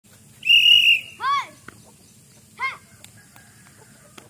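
A single loud whistle blast about half a second long, followed by two short bird calls that rise and fall in pitch.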